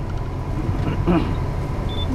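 Steady low rumble of a tour bus's engine and running gear, heard from inside the passenger cabin.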